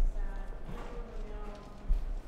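Voices with held, drawn-out tones, and a low thud near the end.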